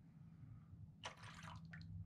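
Faint water sounds, a short splash about a second in then a few drips, as a flower pot is lifted out of a shallow foil pan of water, over a low steady hum.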